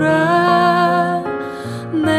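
A slow, soft Korean CCM worship song: a voice singing a gentle melody over quiet accompaniment, with a short drop in loudness between phrases near the end.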